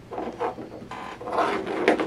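Rubber pull-through bumper being pulled by hand through the hole in a hair shear's finger ring: a few rubbing scrapes, with a sharp click near the end.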